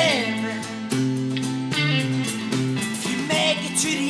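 A small rock band playing an instrumental passage: a five-string electric bass picked by fingers under electric and acoustic guitars, with a note sliding down in pitch right at the start.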